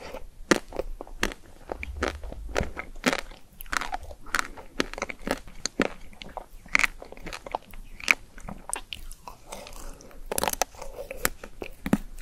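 Biting and chewing of a pink-coated ice cream bar on a stick, close to the microphone: irregular crunches and crackles as the hard coating breaks, with a louder run of bites near the end.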